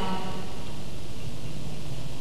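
A pause in the recitation. Only a steady low rumble and faint hiss of the recording's background noise are heard, after the speaking voice trails off at the very start.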